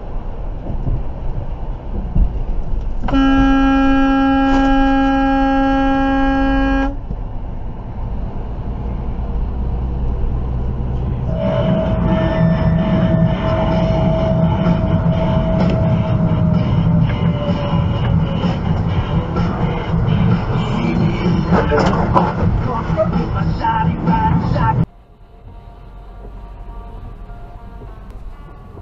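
Road rumble heard from inside a truck cab, broken a few seconds in by one long, flat-pitched vehicle horn blast lasting about four seconds. After a cut comes louder road rumble with a held tone that slowly falls in pitch, then a cluster of sharp knocks, and the sound drops away suddenly a few seconds before the end.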